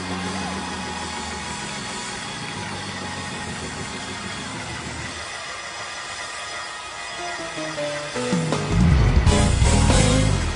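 Live gospel band playing an instrumental passage: held keyboard chords, then a rising run of notes about seven seconds in that leads into a much louder full-band passage with heavy drums near the end.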